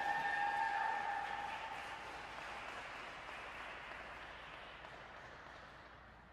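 Small rink crowd applauding, with a long high cheer over it in the first second or so; the clapping fades away gradually.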